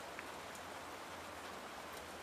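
Faint, steady background hiss with no distinct event: the soundtrack's ambient room tone in a pause between lines.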